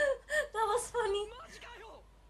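A woman laughing in a few short, high-pitched bursts that die away about a second and a half in.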